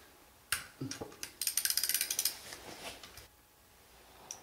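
Socket ratchet turning an 11 mm bolt on the clutch release fork and throw-out bearing in a transmission bell housing: a few knocks, then a quick run of ratchet clicks lasting about a second that thins out.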